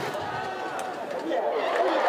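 Indistinct voices and crowd chatter, faint and unclear, with no clear words.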